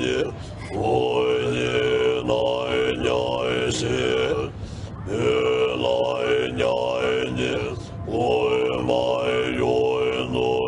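Tibetan monks' throat-singing: a deep chant held on one low note, with overtones sweeping up and down above it as the vowel shifts. It comes in long phrases of about four seconds with brief pauses between them.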